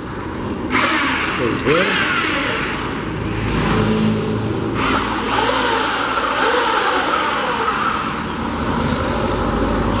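Handheld electric paint mixer starting about a second in and running, its motor pitch shifting as the paddle churns a bucket of old paint.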